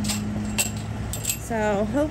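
A few light clinks over a steady low hum, with a person's voice coming in near the end.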